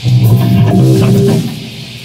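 Amplified guitar playing a loud, low riff of a few notes that starts suddenly and stops about a second and a half in.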